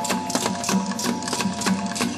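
Southern Philippine (Moro) gong ensemble music: fast, even strikes on pitched gongs ring over a low beat that comes about three times a second.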